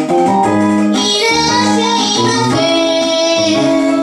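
A woman singing a pop song live into a microphone, accompanied by held chords from a shoulder-slung keyboard (keytar).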